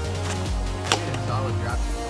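Background music with a steady beat, and one sharp knock about a second in: a pitched plastic Blitzball hitting the plywood backstop behind the batter.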